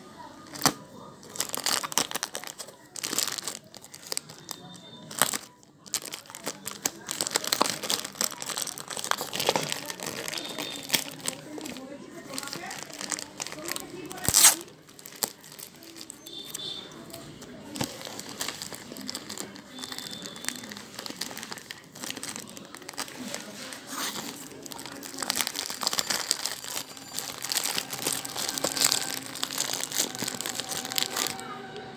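Plastic courier mailer bag crinkling and tearing as it is pulled open by hand, irregular crackling rustles throughout, with one louder sharp crack about halfway through.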